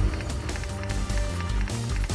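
Dramatic theme music for a television programme's opening titles, with heavy bass and a driving beat of sharp hits.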